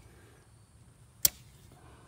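A single sharp click about a second in as a handheld digital tire pressure gauge is pulled off a car tire's valve stem, against a low background.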